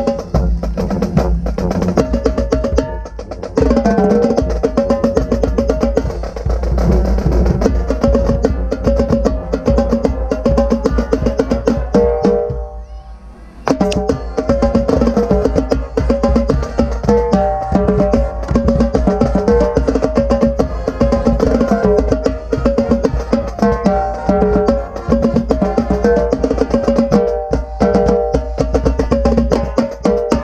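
Marching tenor drums played close up, fast strokes moving across the several pitched drums, with a brief pause about 12 seconds in.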